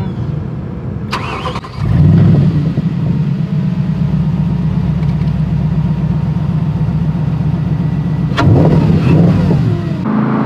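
Spyker C8's Audi 4.2-litre V8 cranking briefly and catching about two seconds in with a loud flare of revs, then settling into a steady idle. Near the end there is a short, louder rise in revs.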